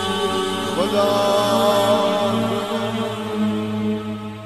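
Devotional chant in Persian, a sung plea to God, over a steady low drone; the voice slides up and then holds one long note.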